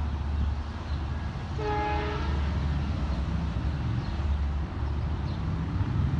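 An approaching Long Island Rail Road train sounds one short horn blast about a second and a half in. A steady low rumble runs underneath.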